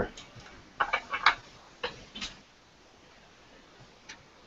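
A few short clicks and knocks in the first half, then quiet room tone.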